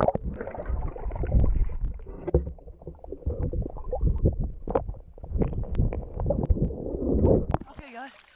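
Muffled underwater sound from a camera held under creek water: a low rumble of moving water and bubbles with scattered sharp clicks and knocks. The sound opens up again near the end as the camera breaks the surface.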